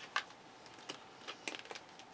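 Tarot cards being shuffled and handled: a few light, irregular clicks of card edges.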